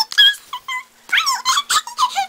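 High-pitched squealing, whinny-like vocal noises made by a child voicing toy horses: a few short calls with gliding pitch, a brief lull about a second in, then a quick run of squeals.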